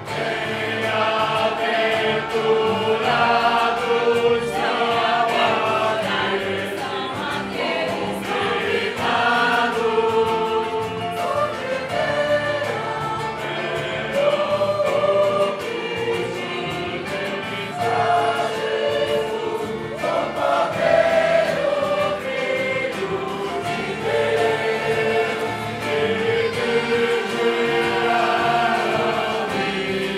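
A choir of voices singing a hymn in Portuguese, holding long sustained notes.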